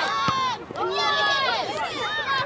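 Several voices shouting and calling out at once, overlapping and unintelligible: sideline and on-field shouting at a youth soccer match.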